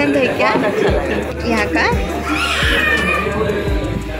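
Voices over background music, with a brief high, wavering cry about two and a half seconds in.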